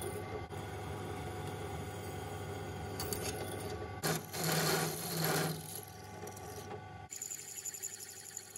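Drill press motor running steadily while a twist drill bores into a steel blank. About four seconds in, a louder, harsher stretch of the bit cutting metal lasts about a second and a half. Near the end the motor hum drops away and a lighter, higher cutting sound with quick ticks follows.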